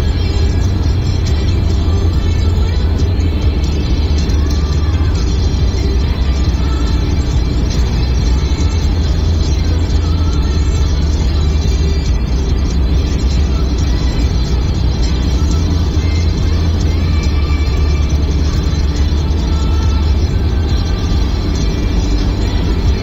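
Steady low rumble of a car's road and engine noise inside the cabin at highway speed, with music playing over it throughout.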